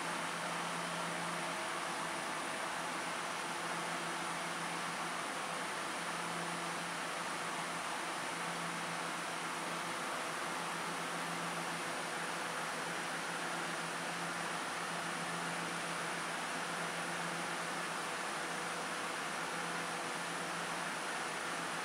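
Steady hum and fan-like hiss of a Taiwan Railway EMU700 electric multiple unit standing at an underground platform with its auxiliary equipment running, ready to depart. A low hum swells and eases every few seconds.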